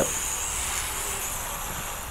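Small electric quadcopter's motors and propellers whirring in flight, a steady hissing whir that slowly fades.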